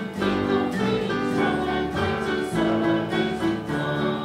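Church choir and congregation singing an upbeat worship action song together, with instruments playing a steady beat underneath.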